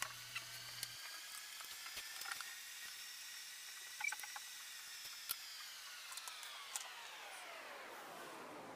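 Faint, scattered light clicks and taps of small plastic phone parts being set down and shifted on a work mat, a few at a time, over a low hiss.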